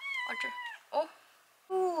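Pet cat meowing: one drawn-out, high meow that drops in pitch at its end, then a brief second call about a second in. Near the end a person answers with a short, lower voice sound.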